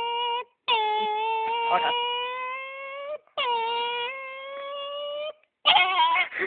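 A man's voice imitating a Vespa scooter engine: long held high notes, each dipping at the start and then creeping upward like revs, with short breaks between them. Near the end the sound breaks into a louder, rough, sputtering burst, mimicking the engine seizing.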